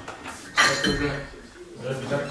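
A sudden metallic clank of a loaded barbell and its plates about half a second in, as the bar is pulled up into a snatch, with voices around it.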